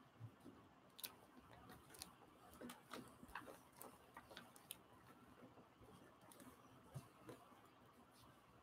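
Near silence, with a few faint light ticks and paper rustles as hands press and rub a sheet of paper down onto an inked hand-carved stamp to take a print.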